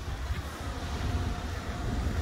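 Semi truck's diesel engine idling: a steady low rumble with a faint steady hum above it.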